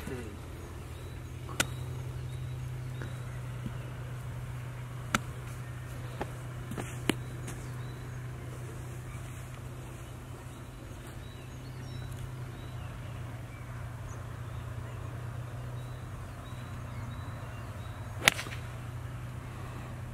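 A golf iron strikes the ball off the tee once near the end, a single sharp crack. Before it there is only a steady low hum with a few faint ticks.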